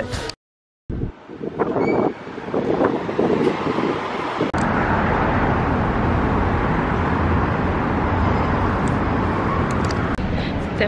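City street traffic noise: after a brief dropout near the start, an uneven mix of street sounds settles into a steady wash of traffic from about four and a half seconds in.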